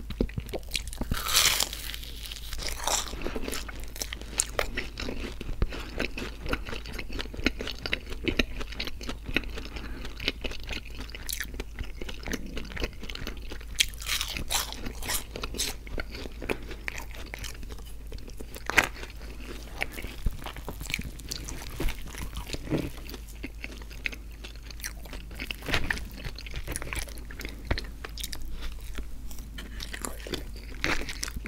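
Biting and chewing McDonald's donut sticks, close to the microphone, a run of small clicks broken by a few sharp, louder bites at irregular moments.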